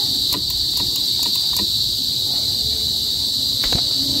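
Steady, high-pitched chorus of night insects, crickets by the sound of it, with a few faint clicks over it, the clearest near the end.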